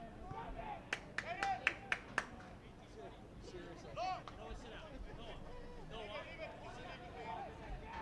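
Distant shouts and calls from players and spectators at an outdoor soccer field, with a quick run of about six sharp hand claps a second or so in.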